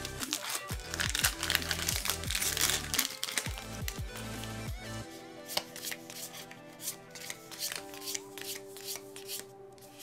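A foil booster-pack wrapper crinkling and tearing open over background music with long held tones, densest in the first half. About halfway through the crinkling gives way to lighter clicks of trading cards being handled.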